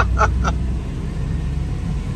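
A 1949 Austin A40's 1.2-litre four-cylinder engine running with a steady low drone as the car drives slowly, heard from inside the cabin.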